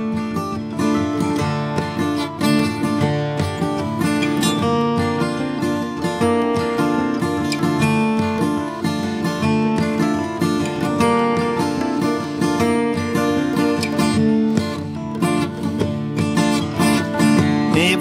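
Instrumental break in a country song, with strummed acoustic guitar carrying a steady rhythm and no singing.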